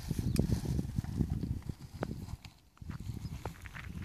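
Low, choppy rumbling on a phone's microphone, strongest for the first second and a half and then dying down, with a few light clicks after.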